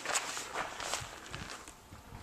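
Faint shuffling, rustling and a few soft knocks as a shooter moves from a table and picks up a pistol, feet scuffing on gravel; no shots are fired yet.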